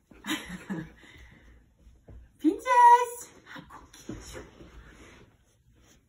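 A toddler's voice during play: short vocal sounds, then one loud, high squeal about two and a half seconds in that rises and then holds, followed by a few fainter vocal sounds.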